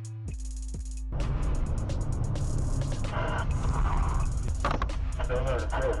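Background music with held, stepping notes for about the first second, then a car's in-cabin dashcam sound: a steady rumble of engine and road noise, with a man's voice speaking twice over it.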